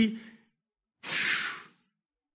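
A single breathy sigh, about half a second long, starting about a second in, with no voiced pitch.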